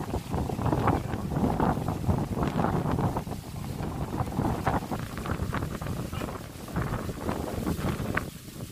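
Wind buffeting the phone's microphone in uneven gusts, a low rumbling roar that swells and eases.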